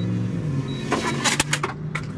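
A steady low motor hum with a slightly wavering pitch, heard inside a car. A short burst of sharp clicking or handling noise comes about a second in.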